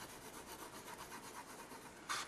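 Prismacolor coloured pencil shading back and forth over a colour patch on Bristol paper: a faint, fast, even scratching of pencil lead on paper. A darker shade is being layered over the first colour, with moderate pressure, to blend the two.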